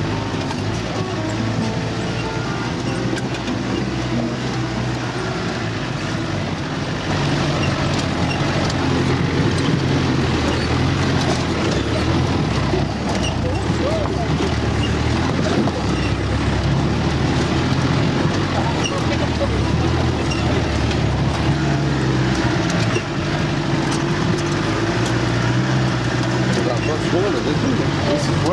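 A 4x4's engine running under load as it drives over a rough dirt track, heard from inside the cab, with the body and fittings rattling over the bumps. It grows louder about a quarter of the way through.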